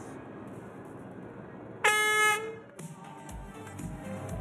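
Race starting horn sounding once, a single held note a little under a second long about two seconds in: the start signal for the swim.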